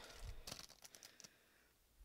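Faint crinkling and rustling of packaging as a pin in a cellophane bag is pulled out of crinkle-cut paper shred. It dies away about a second and a half in, leaving near silence.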